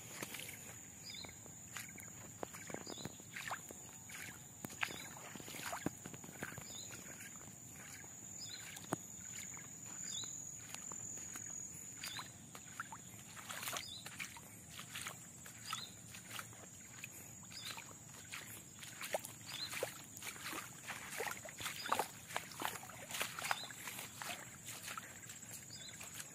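Faint footsteps through wet mud on a dirt road, a steady series of soft steps, with a steady high insect whine behind them.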